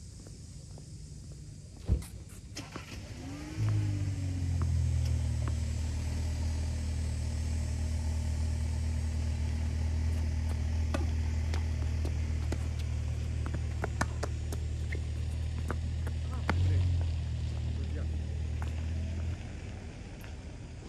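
A low, steady engine hum starts with a short rise in pitch about four seconds in and cuts off suddenly shortly before the end. Sharp clicks of tennis balls struck by rackets sound over it, the loudest about two seconds in.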